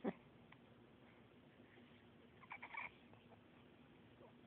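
Baby making brief high-pitched squeaky coos: one quick falling squeak right at the start and a short run of squeaks about two and a half seconds in, over a faint steady hum.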